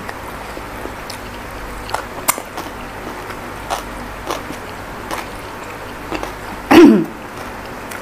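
Quiet mouth sounds of eating by hand, faint clicks of chewing and picking at food. About seven seconds in comes one short, loud vocal sound that falls in pitch, like a throat-clearing grunt or a hum.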